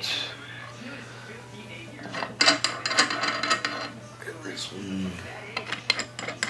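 Metal hardware clinking and rattling as hex nuts on steel threaded rods of a gearbox mounting plate are loosened by hand, with a dense run of clinks about two seconds in.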